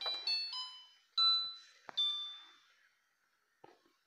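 A short run of chime-like tones, about five notes that each ring out and fade, the loudest a little over a second in, with a faint click just before the last note.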